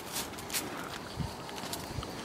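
Footsteps crunching on packed snow: a few sharp crackles and one dull thump about a second in.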